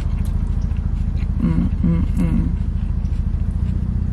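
Car engine idling, heard from inside the cabin as a steady low rumble. Near the middle come three short 'mm' hums of someone eating, with a few faint small clicks.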